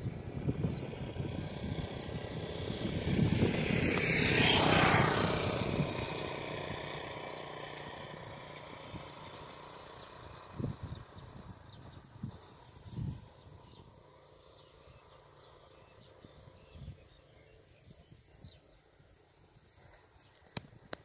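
A road vehicle passing close by, its noise building to a peak about four to five seconds in and then slowly fading away. A few short, low knocks follow later.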